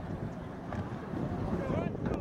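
Wind buffeting the camera microphone in a steady low rumble, with indistinct voices of nearby spectators near the end.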